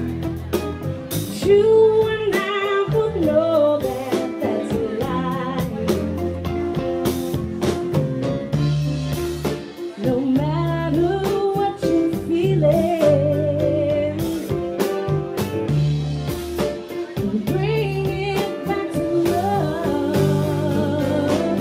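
Live band playing: a woman singing lead over electric guitar, a bass line and a drum kit keeping a steady beat.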